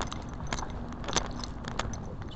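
A light, irregular jingling rattle of small clicks, about a dozen over two seconds, over a faint steady hum.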